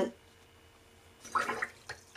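A watercolour brush swished in a jar of rinse water, one short splashy burst a little over a second in.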